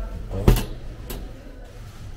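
A plastic tub of sauce dropped into a wire shopping basket: one sharp knock about half a second in, then a smaller click, over a low steady hum.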